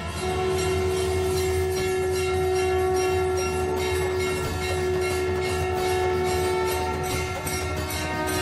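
Background score for a TV drama: one long held, horn-like note over a steady low drone, with soft rhythmic percussion.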